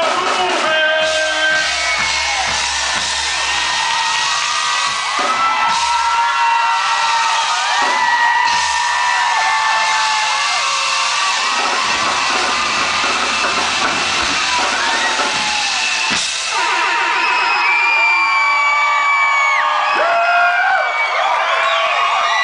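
Loud live concert music, distorted through a phone's microphone, with a crowd screaming and whooping over it.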